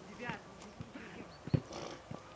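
A football kicked once about one and a half seconds in, a short dull thud, with faint shouts from players on the pitch.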